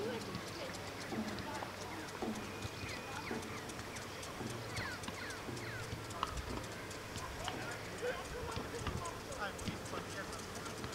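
Rapid, even ticking of a rotating pitch sprinkler, with short chirps and faint distant voices over it.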